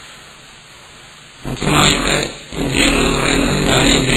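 A man's voice speaking in a lecture. It follows a pause of about a second and a half that holds only faint recording hiss.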